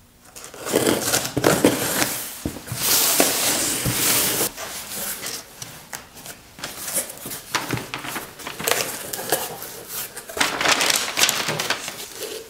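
A cardboard shipping box being opened by hand: packing tape cut and torn, flaps pulled open and brown packing paper crinkling. It is an irregular run of scrapes, rips and rustles with sharp clicks.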